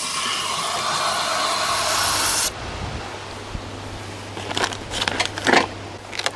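Garden hose spray nozzle running water into a plastic watering can: a steady hiss that cuts off abruptly about two and a half seconds in, followed by a few faint knocks as the can is handled.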